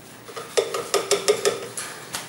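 Paintbrushes clinking and rattling against a hard container, a quick run of clicks over about a second with a short ringing tone from the container.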